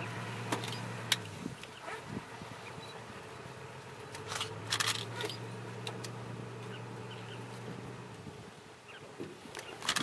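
Safari vehicle's engine idling with a steady low hum, fading in and out. A few sharp clicks and snaps fall over it.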